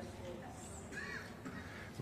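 Quiet hall room tone with a brief, faint voice call from the congregation about a second in.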